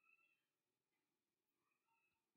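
Near silence: faint room tone in a pause of the narration.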